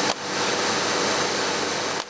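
Cigarette packaging line running: a steady machine whir and hiss with a faint hum under it.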